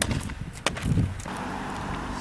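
Two sharp knocks, one right at the start and one just over half a second later, then a low thud about a second in, followed by a faint steady hum.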